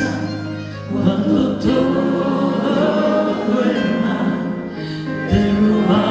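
Live band performance with a woman singing lead and backing singers holding sustained notes.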